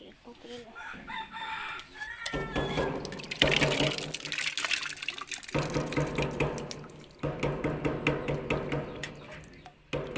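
A water pump starts about two seconds in and runs with a steady low hum and the rush of water, dropping out briefly twice. The pump has just been brought back into use after its clogged water line and strainer were cleaned. A rooster crows in the first seconds.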